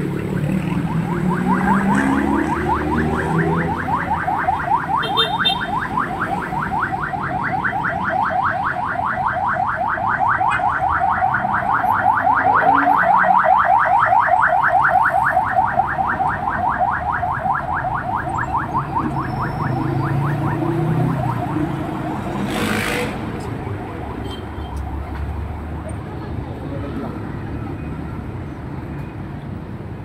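A rapidly pulsing electronic alarm tone over steady street traffic. It goes on for about twenty seconds and then stops, followed by a short hiss.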